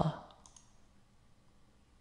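Two faint, short clicks about half a second in, after the tail of a spoken 'uh'; then quiet room tone.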